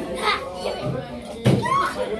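Children's voices as girls play, with a short rising call near the end.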